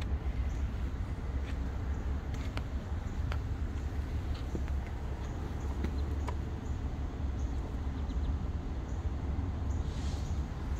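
Outdoor street ambience: a steady low rumble with scattered faint clicks and a few high chirps.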